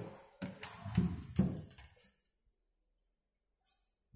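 Lever handle and latch of a hotel room door clicking and knocking as the door is pushed open, three sharp knocks within the first second and a half.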